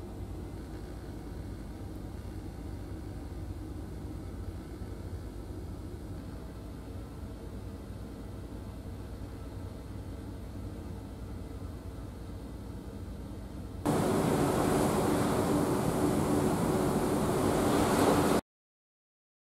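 Steady low rumble of a ship's engines. About fourteen seconds in it steps up louder to an engine hum with a rushing hiss, heard from inside the ship.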